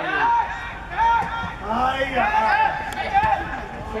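Raised voices shouting short calls at a football match, several shouts one after another with brief gaps.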